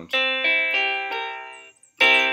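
bitKlavier software piano playing a few notes that enter one after another and ring, decaying, until they are released about 1.7 s in. The piano is set to partial tuning, with the notes tuned like the overtones of a harmonic series rather than in equal temperament.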